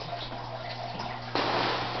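Steady low hum with water running and bubbling in a hydroponic reservoir tank. The water sound grows suddenly louder about one and a half seconds in.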